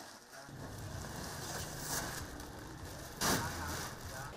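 Low-level handling noise of woven plastic sacks and dried herb roots rustling as they are packed by hand, over a low steady hum, with a louder rustle about three seconds in.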